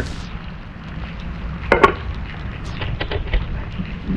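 Steady rain falling, with a low rumble underneath. A sharp knock comes about two seconds in, followed by a few light taps.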